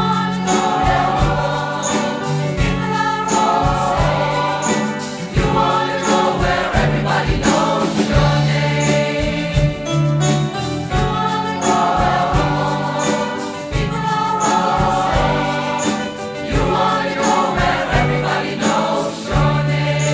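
A mixed choir singing with a live band of keyboard and electric guitars over a steady beat.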